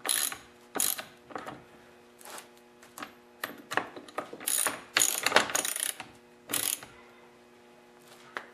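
Socket ratchet clicking in short, irregular bursts as the chainsaw's two bar nuts are tightened down.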